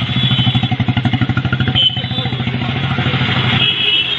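Single-cylinder motorcycle engine running steadily at idle, with a rapid, even beat.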